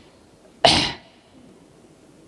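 A man sneezes once, sharply and close to the microphone, a little over half a second in.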